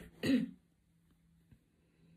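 A woman clears her throat once, briefly, about a quarter second in.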